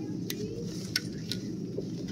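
Steady low background hum of a shop's interior, with three or four short, light clicks in the first second and a half.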